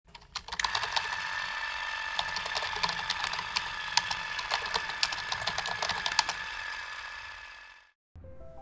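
Typewriter typing sound effect: quick, irregular key clicks over a steady hiss with a faint high whine. The clicks stop about six seconds in and the hiss fades out.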